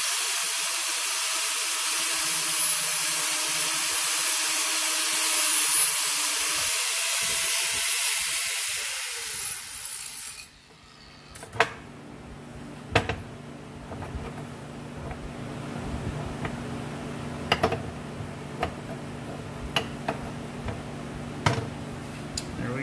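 Angle grinder with a flap disc grinding the end of a steel tube, a steady hiss with a motor whine, shaping the tube a little at a time to fit a rod end. About nine seconds in the whine sags and the grinder stops, and a few light metal knocks follow as the tube is set against the rod end to check the fit.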